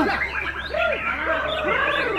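Several caged white-rumped shamas (Bornean murai) singing at once in a dense, overlapping chorus of whistled phrases and chirps.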